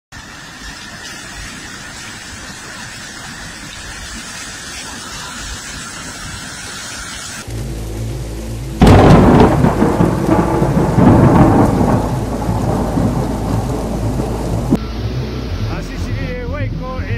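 Torrential rain and floodwater running through the streets, heard as a steady rushing noise on phone recordings that cut abruptly from one to the next. About nine seconds in, a much louder, dense rush of noise takes over.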